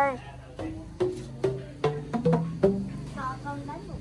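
A child striking tuned bamboo tubes one after another. It makes a string of short knocking notes at changing pitches, about two or three a second. A brief voice comes in near the end.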